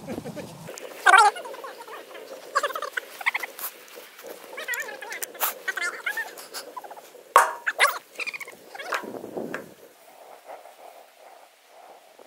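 Fire burning in a metal drum, with sharp irregular pops and crackles, the loudest about seven seconds in. High, wavering calls come and go over the first nine seconds.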